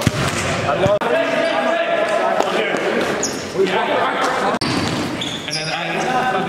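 A basketball bouncing on a gym floor amid players' voices, echoing in a large hall.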